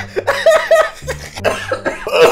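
A man laughing hard at a joke, in a run of short, quick bursts of laughter.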